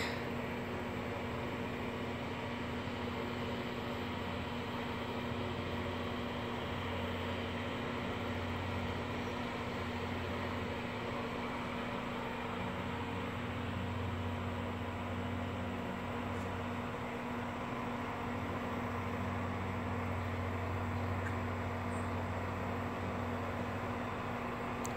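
A steady low mechanical hum with a constant low tone and a faint hiss over it.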